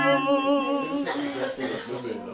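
A man singing unaccompanied, holding a long wavering note and moving to another about a second in.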